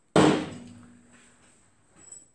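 A cast-iron BSA Bantam cylinder barrel set down on a metal workbench: one loud clunk just after the start, with a short low metallic ring that fades away over about a second.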